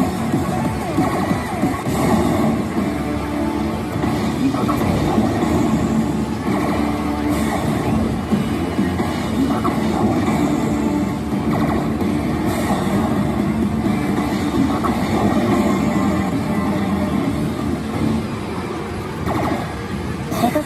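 Pachislot machine playing its bonus music and sound effects as the reels spin, over the constant din of a pachinko hall.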